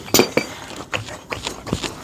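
Sharp metallic clinks from a sandblasting pot's drain fitting being struck with a hand tool, several irregular hits in quick succession, knocking packed sand loose so it drains out.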